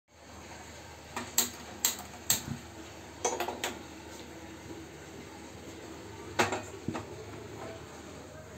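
Sharp clicks about half a second apart as a gas stove burner is lit, then a few knocks from an aluminium pot of water being handled and lifted onto the burner.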